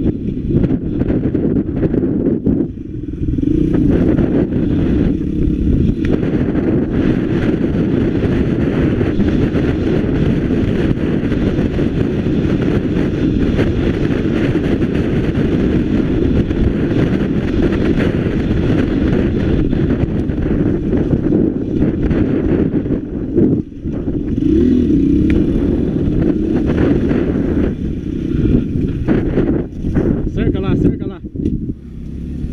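Motorcycle engine running steadily while riding along a rough dirt road. The engine eases off briefly twice, about two and a half seconds in and about three-quarters of the way through.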